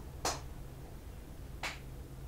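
Two short, sharp snaps about a second and a half apart from a tarot card deck being handled, over a low steady hum.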